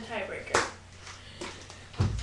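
Aluminium crutch giving one sharp knock about half a second in, then a fainter knock a second later, as the crutches are handled and bumped.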